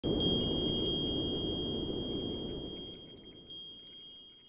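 Chimes tinkling: high, clear tones struck one after another and left ringing, over a low rushing noise that slowly fades away.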